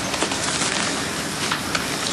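A steady hiss filling the whole sound, with scattered small crackles through it.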